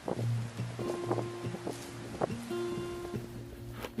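Background music: sustained held tones over a steady low note.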